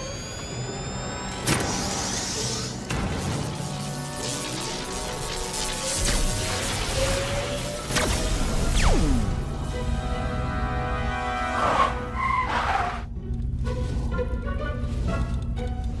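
Dramatic cartoon score with sound effects: a sharp hit about a second and a half in, then a slowly rising tone, then another hit about eight seconds in followed by a quick falling whoosh, as the energy beam shoots up and the bubble forms.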